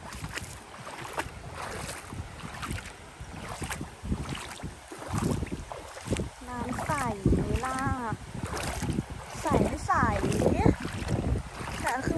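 Wind rumbling on the microphone in gusts over the rush of a shallow flowing river. Voices talk for a few seconds past the middle.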